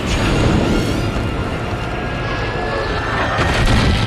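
Action score music over the deep rumble of explosions, loudest near the end.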